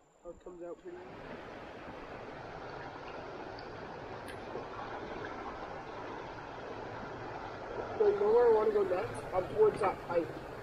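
Steady rush of flowing creek water, starting about a second in. A brief voice comes in near the end.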